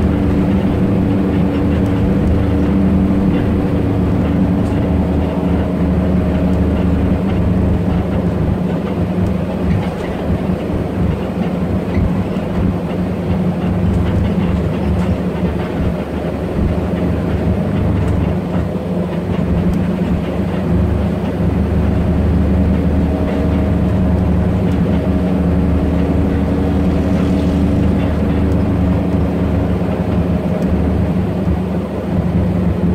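Steady engine hum and road noise heard from inside the cabin of a moving passenger bus.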